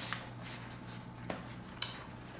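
Quiet room tone with a low steady hum, broken by a faint click a little past halfway and a short, sharp tick near the end: small handling or mouth noises.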